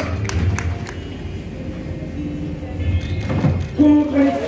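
Show music dying down, with a few short knocks in the first second and new pitched notes coming in near the end.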